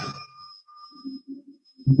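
A pause in a man's talk: his voice trails off, leaving quiet room tone with a faint steady high-pitched whine. About a second in come three short, faint, low sounds, and speech starts again at the very end.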